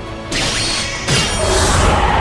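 Two sudden crashing impact sound effects over background music, struck as two swords clash. The first comes a moment in; the second, about a second in, is louder and swells into a deep rumble that fades near the end.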